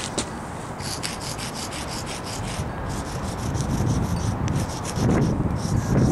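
Sidewalk chalk scraping on concrete pavement in quick back-and-forth strokes, about five or six a second, pausing briefly twice.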